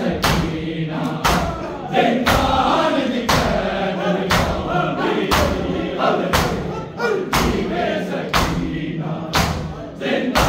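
A group of men doing matam, striking their bare chests with their palms in unison about once a second, each stroke a sharp slap. Over the strikes, a crowd of male voices chants a noha.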